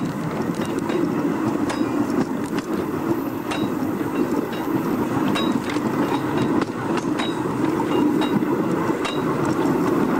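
Vintage railway carriage rolling slowly along the track, a steady rumble with scattered clicks and knocks from the wheels on the rails and a few brief high squeaks.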